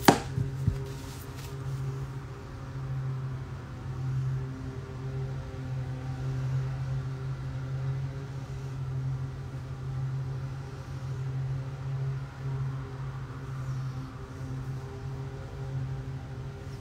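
Lawn mower engine running steadily outside the house, a low hum that swells and eases a little. A single sharp click sounds right at the start.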